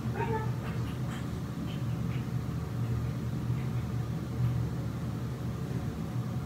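A steady low hum, with a brief faint cry-like sound just after the start and a few faint ticks.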